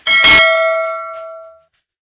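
A single bell-like ding: struck once, then ringing with several clear tones that fade away over about a second and a half.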